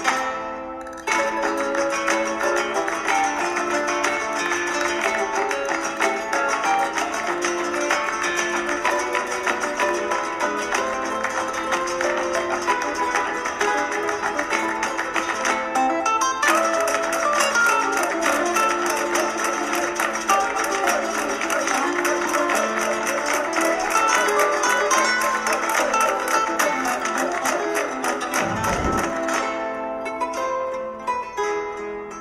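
Background music led by plucked guitar, with brief breaks about a second in and near the middle.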